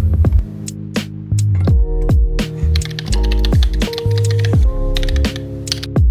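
Background music with a beat and deep bass notes, over typing on a custom mechanical keyboard whose switches are not lubed.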